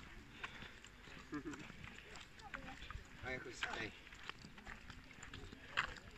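Faint voices outdoors, with a short laugh about three and a half seconds in, and a sharp knock near the end.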